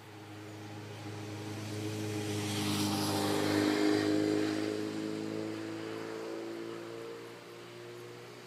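A motor vehicle passing by: its engine hum and tyre noise swell to a peak about three to four seconds in, then fade away.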